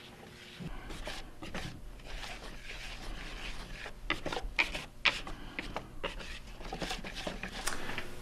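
Red silicone-coated balloon whisk stirring dry flour and ground spices in a mixing bowl: irregular soft scraping through the flour, with quick ticks as the wires knock the side of the bowl.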